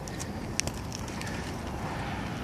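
Steady outdoor rushing noise with a few soft clicks in the first second.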